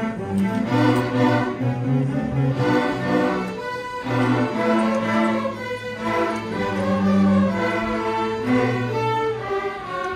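School string orchestra of violins, cellos and double bass playing a piece together, bowed notes held and changing in steps, with short breaks between phrases.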